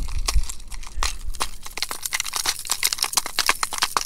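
Hard plastic lures and treble hooks clicking and rattling against a clear plastic tackle box as a Rapala minnow lure is picked out of it: a rapid, irregular run of small clicks.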